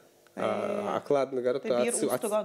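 A man speaking after a brief pause of about a third of a second; his first sound is drawn out.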